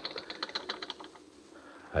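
A rapid run of faint clicks, about a dozen a second, fading away a little over a second in.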